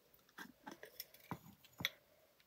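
Jam jar lid being twisted off the glass jar: a few faint scrapes and small clicks, the sharpest near the end.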